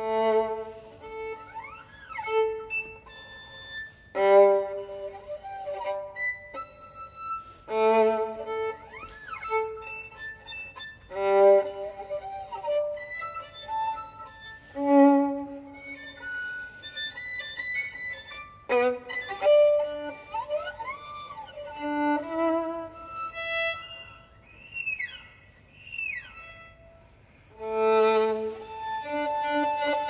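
Solo violin playing a contemporary piece: strongly accented bowed notes every few seconds, with notes that slide up and down in pitch between them. A long held note closes the passage.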